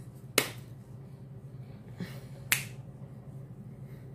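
A few sharp clicks or snaps: one about half a second in, a fainter one at two seconds, and a louder one about two and a half seconds in, over a steady low hum.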